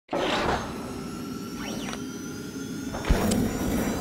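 Intro sting of synthetic sound effects: a whoosh at the start, pitch sweeps gliding up and down a little before two seconds, then a sharp low thump just after three seconds.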